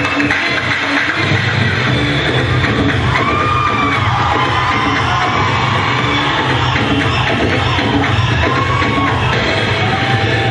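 Loud recorded dance music, with a short note repeating steadily and a bass line that comes in about a second in; a few gliding tones sound over it midway and near the end.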